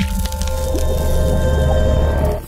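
Sound effect and music of an animated logo intro: a sudden hit at the start, then a heavy low rumble under several held tones.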